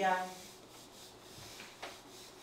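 Whiteboard duster rubbing across a whiteboard, wiping off marker writing in a few soft strokes.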